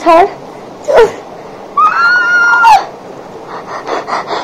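A woman shouts 'let go' and then lets out a long, high-pitched squeal about a second long during a hair-pulling play fight, followed near the end by quick, breathy gasps.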